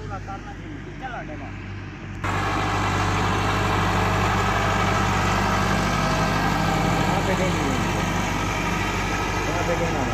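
Tractor diesel engine running steadily while it pulls a laser-guided land leveler bucket across a field. The engine is quieter at first, then jumps abruptly louder about two seconds in and stays steady.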